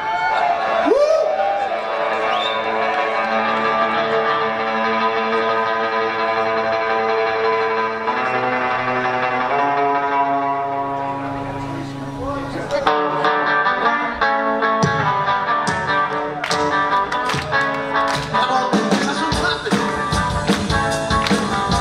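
Live rock band starting a number: long held chords ring out for the first dozen seconds or so, then the drum kit and the rest of the band come in with a steady beat.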